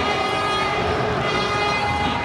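Steady drone of many horns blown together in a stadium crowd, several held tones at once over the crowd's noise.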